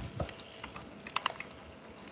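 Computer keyboard typing: a run of irregular key clicks, several in quick succession a little past a second in.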